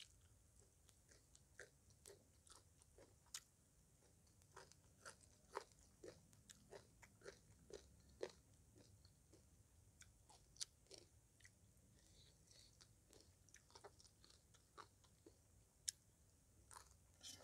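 A person chewing mouthfuls of Thai green papaya salad (som tam) close to the microphone: a faint, irregular run of short clicks from the mouth, with a few louder ones scattered through.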